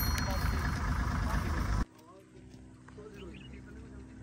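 A Suzuki Jimny creeping down a dirt slope, its engine low under heavy wind noise on the microphone, with a shouted voice. The sound cuts off abruptly about two seconds in, leaving a quiet stretch with faint voices and a low steady hum.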